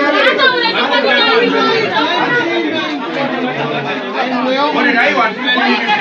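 Several people talking over one another at once, a crowd's overlapping voices.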